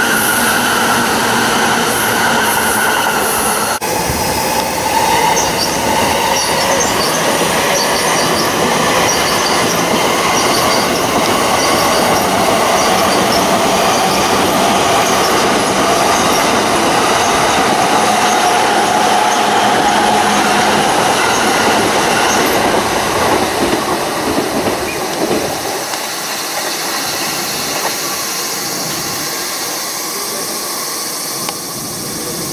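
JR East Joban Line electric trains passing close on the tracks below: loud, steady rolling noise of steel wheels on rail, with a high wavering squeal of wheels on the rail running through it. The sound eases off after about 25 seconds as the train moves away.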